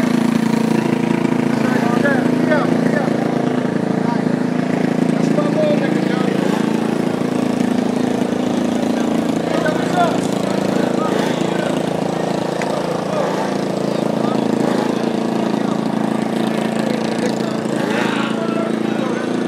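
KTM 300 two-stroke dirt bike engine running at a steady idle, its pitch holding level.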